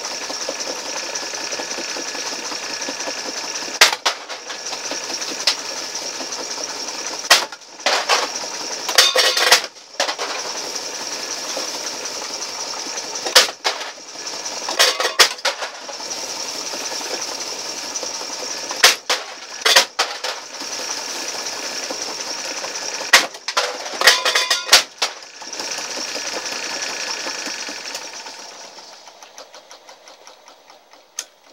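Homemade can crusher's two electric motors running steadily with a high whine, its two counter-rotating wheel sets crushing aluminium pop cans in sharp crunching, clattering bursts every few seconds, some cans bouncing before they are drawn through. The machine winds down near the end.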